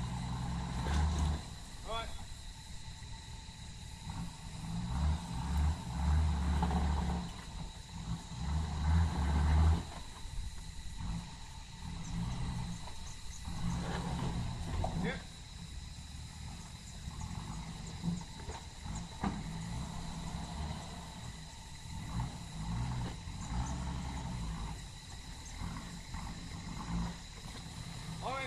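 A four-wheel drive's engine working at low speed as it crawls over creek-bed boulders. The revs surge louder about five seconds in and again near ten seconds, with a few sharp knocks later on.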